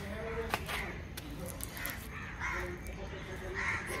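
A few short, harsh, caw-like bird calls, faint, over a steady low background rumble.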